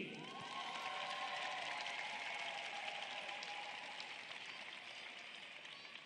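Arena audience applauding in welcome for a pair of skaters just announced, the applause slowly dying down.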